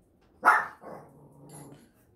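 A dog barks once, sharply, about half a second in, then growls quietly.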